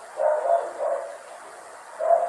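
A dog barking, a few short barks in the first second.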